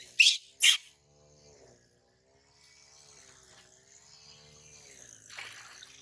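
A baby macaque gives two short, high-pitched shrieks in quick succession while it is being bathed. Near the end, water is poured from a metal bowl and splashes over it into a steel basin.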